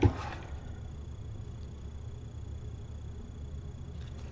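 Steady low background hum with a faint high-pitched whine, after a single spoken word at the start.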